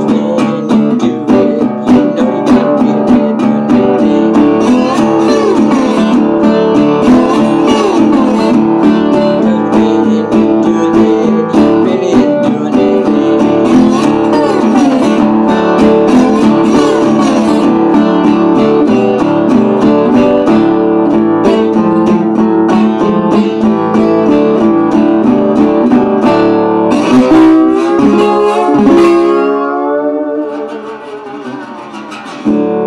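Metal-bodied resonator guitar in open D tuning played blues style with a slide, gliding notes over a steady picked bass. Near the end the playing changes to a few ringing chords that die away.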